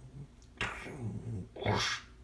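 A man making playful mouth sound effects: a low, growl-like voiced sound about half a second in, then a short breathy, hissing burst near the end.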